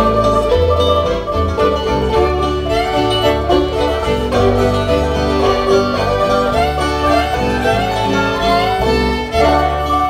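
A live acoustic string band plays an instrumental break with no singing: fiddle, banjo, mandolin, acoustic guitar and upright bass.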